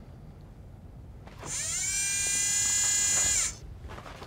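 A robot's motorised whine. It starts about a second and a half in, rises in pitch, holds steady for about two seconds, then cuts off.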